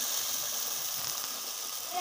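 Bishi yeast dough frying in hot oil in a pan: a steady, even sizzle.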